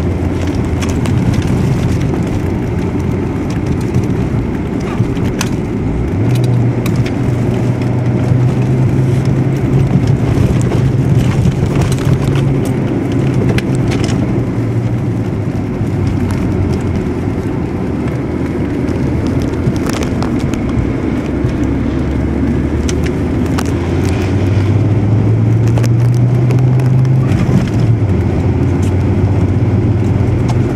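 Car engine and road noise heard from inside the cabin while driving on snow: a steady low hum that steps up in pitch about six seconds in and climbs again near the end, with scattered clicks and crackles.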